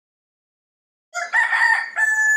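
Silence, then about a second in a rooster starts crowing: a pitched cock-a-doodle-doo whose long final note runs on.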